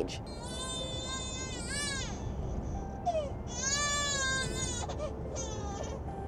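A baby crying in the car: a long wail rising and falling, a second long wail about three and a half seconds in, then a short cry near the end, over the low hum of the moving car's cabin.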